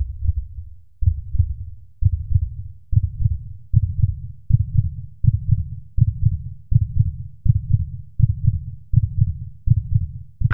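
Heartbeat sound effect: low double thumps, lub-dub, repeating about once a second at first and gradually quickening to about one and a half a second.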